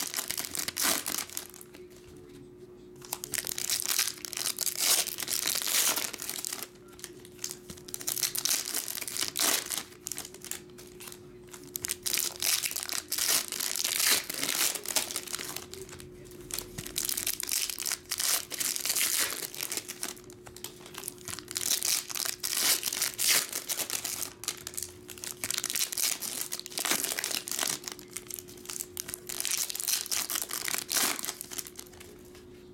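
Foil trading-card pack wrappers crinkling and tearing as packs are ripped open and the wrappers crumpled. The sound comes in repeated bursts with brief lulls.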